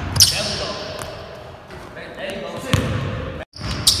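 Basketball being dribbled on a hardwood gym floor, the bounces echoing in a large hall. The sound drops out for an instant shortly before the end.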